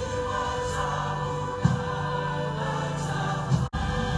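Choir singing a hymn in long held notes, with a split-second dropout near the end.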